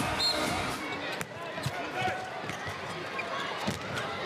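Arena crowd noise dying away in the first second, then a handball bouncing on the court floor, with a few sharp thuds among faint voices.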